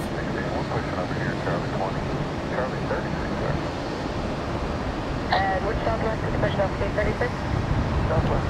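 Airbus airliner's jet engines at takeoff power, heard from afar as a steady rumble, with a faint voice about five seconds in.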